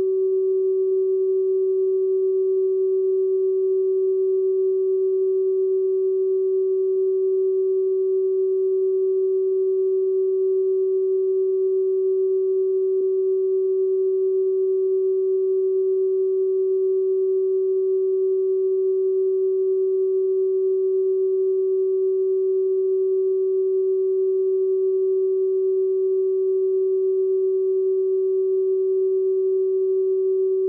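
Loud, steady electronic sine tone of one unchanging pitch, a test tone at the tail of the radio broadcast tape.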